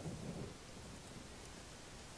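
Faint, steady room tone: a low, even hiss with no distinct events.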